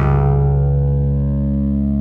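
Synton Fenix 2d analog modular synthesizer holding one low sustained note through its phaser in feedback mode and its delay. The bright upper part of the sound dies away while the low note stays steady.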